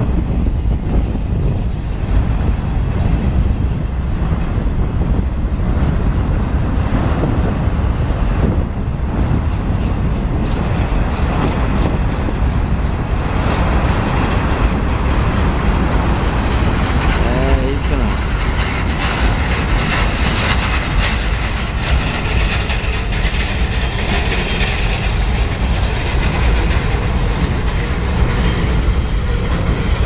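Freight train boxcars rolling past, a steady rumble of wheels on the rails.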